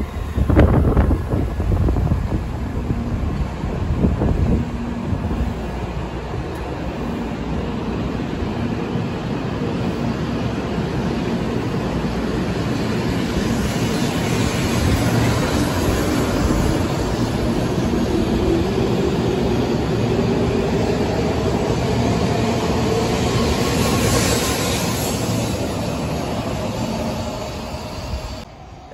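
N700-series Shinkansen train pulling out of the station and accelerating past along the platform. Its running noise is joined by a whine that rises steadily in pitch as it gathers speed, easing off near the end as the train clears the platform.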